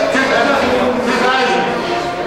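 Livestock auctioneer's rapid, sing-song bid chant, amplified over the sale ring's PA.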